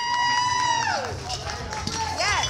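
A spectator's long, high-pitched cheer, held on one note and dropping away about a second in, over lighter crowd noise after a successful bench press.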